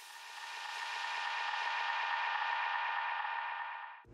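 A steady drone of several held high tones over a hiss, added as a transition sound effect. It fades in over the first second, the hiss dulls toward the end, and it cuts off sharply.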